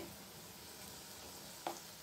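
Batter-coated potato chops sizzling faintly in hot oil in a kadai, with one short click near the end.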